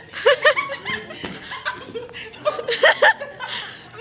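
Kids laughing, several short peals of laughter one after another.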